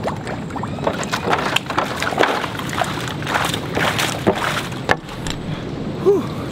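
Footsteps knocking on a wooden plank boardwalk, a few irregular knocks a second, over a steady rush of wind on the microphone.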